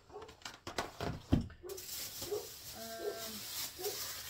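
Grocery packaging being handled: clicking and crinkling with one heavy thump about a second in as a cardboard box is set down, then a plastic produce bag rustling. A short hummed voice sound comes near the end.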